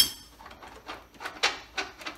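Metal hand tools clanking against metal: a sharp ringing clang at the start, then a few lighter, irregular metallic knocks.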